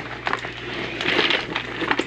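Rustling and a few light knocks and clicks of a person moving about close to the microphone, getting up from a chair and shifting things.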